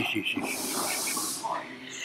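A man's drawn-out hissing 'sss' through the teeth, lasting about a second, just after a brief voiced sound.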